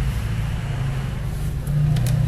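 A steady low hum that does not change.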